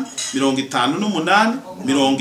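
A man's voice speaking into a handheld microphone, in short phrases with brief pauses.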